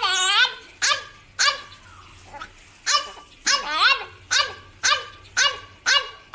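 Small dog giving a run of about nine short, yelping barks, some bending up and down in pitch.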